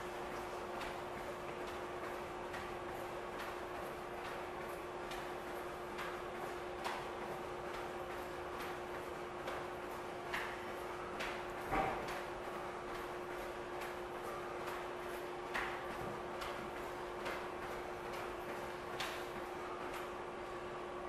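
Faint taps of sneakers landing on a wooden floor during jumping jacks, a few louder than the rest, over a steady hum and hiss.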